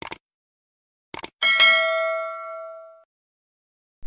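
Subscribe-button sound effect: two quick mouse clicks, two more about a second later, then a single bell ding that rings on and fades out over about a second and a half.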